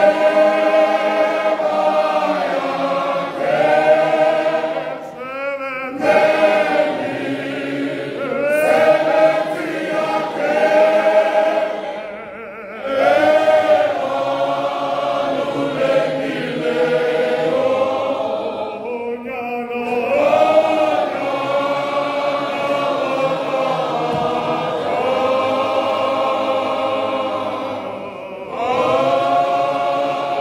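A church congregation of men singing a hymn together: long held notes in phrases, with short breaks for breath between them.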